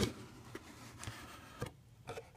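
Cardboard subscription box being opened by hand: a sharp tap at the start, then quiet handling noise with a few small clicks as the lid is lifted.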